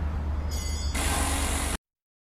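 Loud noisy rush of the channel's outro title-card sound effect, with a deep rumble underneath. It cuts off abruptly into silence near the end.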